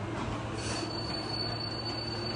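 Bumper car being pushed by hand across the rink floor, giving a single high, steady squeal that starts about half a second in and holds, over a low hum.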